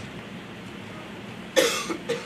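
A man coughs once, a short sharp cough close to the microphone, about one and a half seconds in, after a stretch of faint room hiss.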